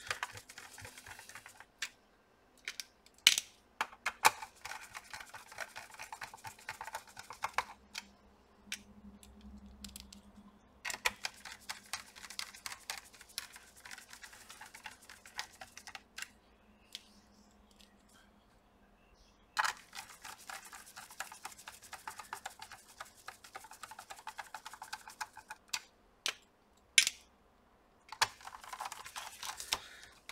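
A hand screwdriver driving small screws into a laptop's plastic bottom case: stretches of rapid small clicking and scraping a few seconds long, broken by short pauses and a few single sharp clicks.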